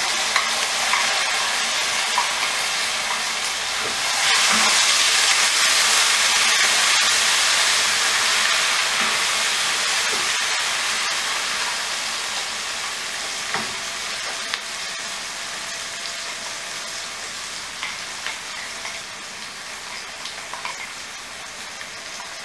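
Ground masala paste sizzling in hot oil in a non-stick pan as it is scraped in from a steel bowl and stirred with a wooden spatula. The sizzle swells about four seconds in and then slowly dies down, with a few light knocks of the utensils in the second half.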